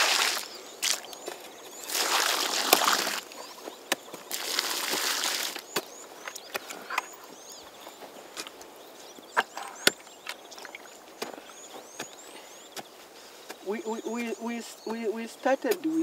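Water poured from a plastic bucket into dug planting holes, splashing onto the soil in three bursts over the first six seconds to moisten the holes before seedlings go in. Scattered light knocks and steps follow, and a voice speaks briefly near the end.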